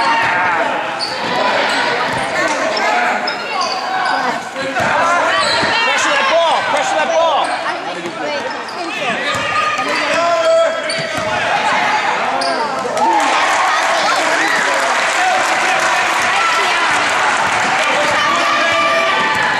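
Indoor basketball game sounds: a ball bouncing on a hardwood court amid spectators' shouts and calls, which swell about two-thirds of the way through.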